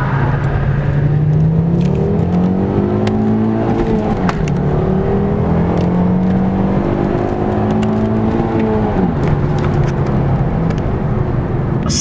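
Ford Mondeo's 2.5-litre turbocharged inline five-cylinder petrol engine under hard acceleration, heard from inside the cabin. The revs climb steadily, drop at an upshift about four seconds in, climb again and drop at a second upshift about nine seconds in.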